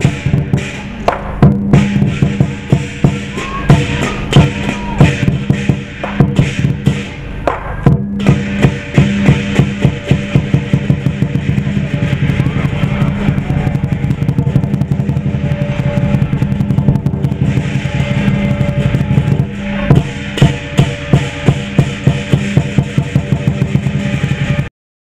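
Live lion dance percussion: a large Chinese drum beaten in a fast, driving rhythm with accented strokes, over clashing cymbals.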